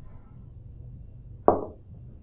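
A single dull thud about one and a half seconds in that dies away quickly, over a low steady hum.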